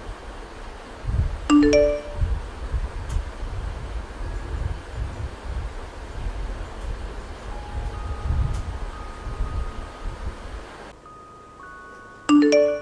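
A messaging-app notification chime, three quick rising notes, sounds about a second and a half in, over a steady low rumble.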